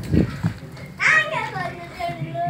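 A child's voice calls out about a second in: a high cry that falls steeply in pitch and is then held. Just before it come a few low thumps.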